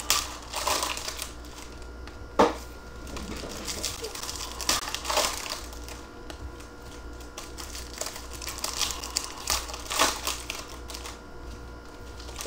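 Foil-wrapped trading card packs and their cardboard box crinkling and rustling as gloved hands handle them, with a few sharp taps and clicks, the loudest about two and a half seconds in.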